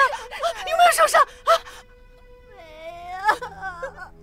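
A woman wailing and sobbing in distress. Broken cries come in the first half, then a short lull, then one long rising wail.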